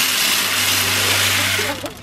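Dry chicken feed being poured into a plastic hanging poultry feeder: a steady rushing hiss of grains falling into the tube, starting suddenly and stopping just before the end.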